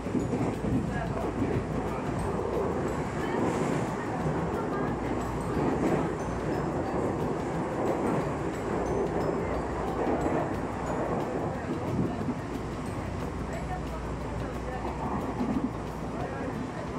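Electric commuter train running at about 80 km/h, heard from inside the carriage: a steady rumble of wheels on rail and running gear.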